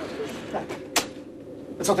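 A few light knocks, then a single sharp click about a second in.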